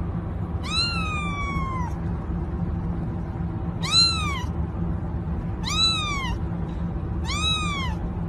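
A young kitten meowing four times in high, rising-then-falling calls, the first one the longest.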